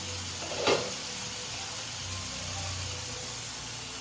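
Peas and tomatoes sizzling in a nonstick pan on a gas burner over medium-high heat, a steady hiss with a low hum beneath. A single sharp clink sounds just under a second in.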